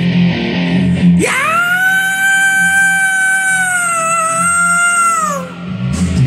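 Heavy rock backing with electric guitar, then about a second in a singer's high wordless scream swoops up and is held on one long note, falling away near the end as the band comes back in.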